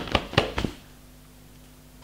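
Four light taps in the first half-second or so, then quiet room tone with a faint steady hum.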